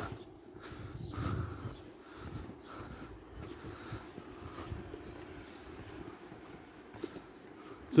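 Footsteps of a person walking on a pavement at a steady pace, faint, over a low street background.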